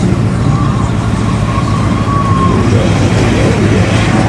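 Pickup truck engines running in a steady low rumble as an old full-size pickup tows a mud-stuck Toyota pickup out on a strap.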